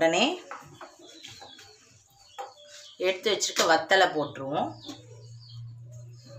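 A woman's voice for about a second and a half, starting about three seconds in, then a steady low hum.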